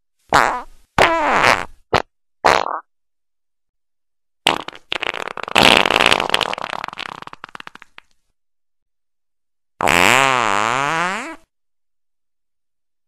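A string of fart sounds with gliding, wavering pitch, cut together with complete silence between them. Four short ones come in the first three seconds. Then a long fluttering one fades out over about three and a half seconds, and a warbling one comes near the end.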